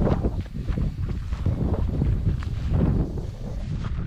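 Wind buffeting the microphone with a heavy, uneven rumble, and scattered footsteps through dry grass.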